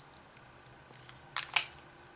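Two quick lip smacks about a second and a half in, as freshly applied lipstick is pressed together between the lips.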